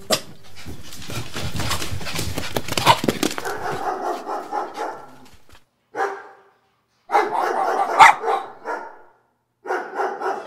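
Beagles barking and yelping in several short bursts that cut off suddenly, with clicking and rustling handling noise in the first few seconds, on an old camcorder recording.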